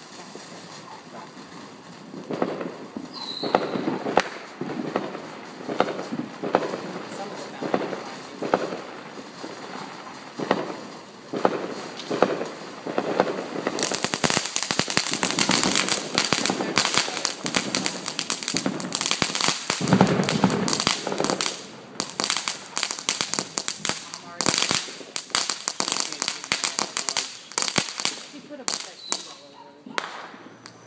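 Soda Bottle fountain firework spraying sparks: scattered crackling pops at first, then a dense, louder crackle from about halfway through, dying away just before the end.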